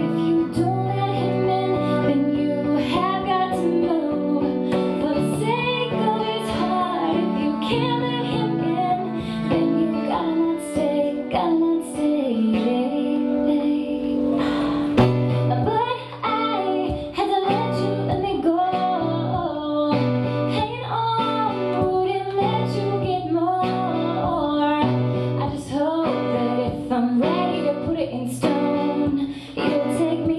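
A woman singing live with strummed acoustic guitar and a cello playing sustained low notes beneath.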